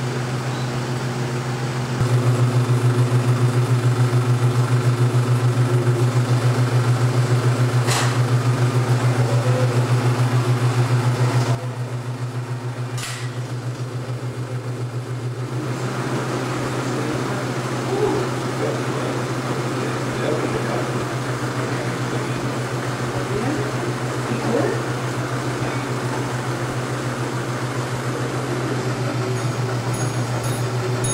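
35mm carbon-arc film projector running: a steady low hum with a fast, even flutter from the mechanism. It is louder from about two seconds in until about eleven seconds, then settles lower.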